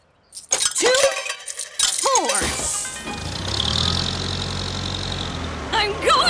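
Cartoon sound effects: tokens clinking into a token machine, with short swooping tones, in the first two seconds. Then a steady low engine hum from a cartoon forklift for the rest.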